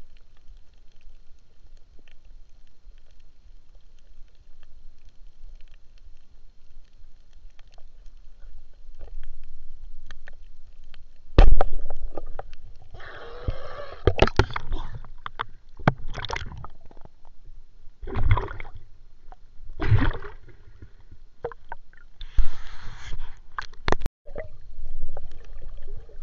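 Water sloshing and splashing over a low rumble, with a sudden loud knock about halfway through followed by several short bursts of splashing.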